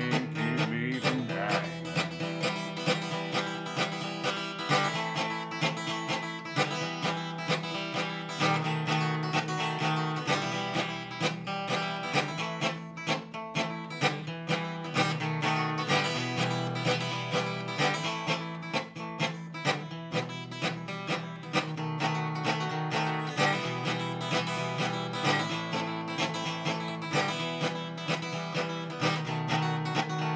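A solo steel-string acoustic guitar strummed and picked in a steady country rhythm, with no singing.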